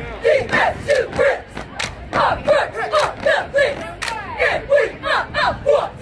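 A squad of cheerleaders shouting a cheer in unison, short high syllables in a quick rhythm, cut through by sharp hand claps.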